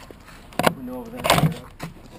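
A sharp click or knock a little over half a second in, followed by a short burst of a person's voice with a rattling clatter under it.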